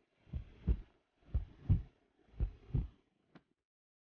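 Slow heartbeat, the double lub-dub thump repeating three times about a second apart, with a short faint click near the end.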